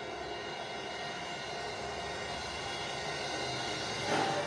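A steady mechanical drone, like engine noise, from the wartime sound effects playing in the museum car's interactive exhibit.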